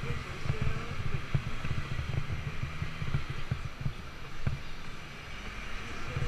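Riding noise from a bicycle on city pavement, picked up by a camera mounted on the bike: a steady low rumble with many small irregular knocks and rattles as it rolls over the surface. City traffic hisses behind it, and things ease slightly near the end as the bike slows.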